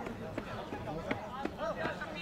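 Indistinct men's voices talking and calling across an open football pitch, with a few faint clicks.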